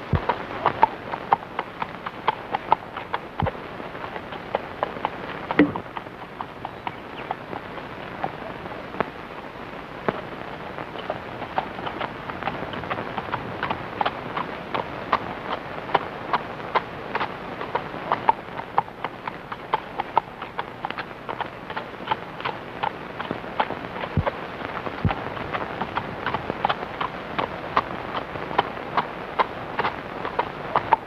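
Horse's hooves clip-clopping on a dirt track: a steady run of sharp hoofbeats, a few a second, over a constant background hiss.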